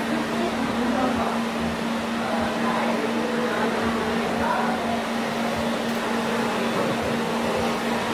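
Steady machine hum holding one low tone, like a fan or motor running, with faint voices in the background.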